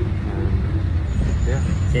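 Steady low rumble of a bus's engine and road noise heard from inside the cabin while it is moving.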